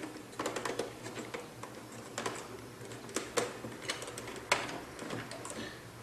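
Irregular small plastic clicks and taps as fingers work loose the gun travel lock on a 1/16 scale model tank, freeing the main gun barrel.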